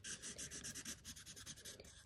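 Black felt-tip marker scribbling on paper: faint, quick back-and-forth scratchy strokes, several a second, as an area is coloured in.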